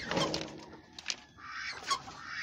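Domestic birds making soft, low calls, mixed with rustling. There is a sharp click about a second in.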